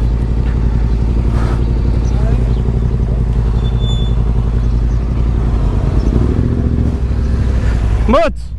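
Yamaha Ténéré 700's parallel-twin engine running steadily at low revs, with no revving up or down.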